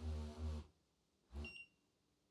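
Cordless knee massager's vibration motor humming faintly in quick pulses, about five a second, on its faster setting, and stopping about half a second in. About a second later a short electronic beep comes from the unit as it is switched off.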